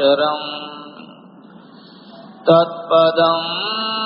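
A man's voice chanting a Sanskrit invocation in long held notes. The chant fades out about a second in and starts again with a new phrase about two and a half seconds in.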